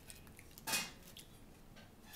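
Faint sounds of a chocolate cupcake being handled over a plastic bowl: one short scrape or rustle under a second in, and a few light clicks.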